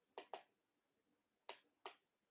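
Near silence broken by four faint, sharp clicks in two quick pairs, one pair just after the start and one about a second and a half in.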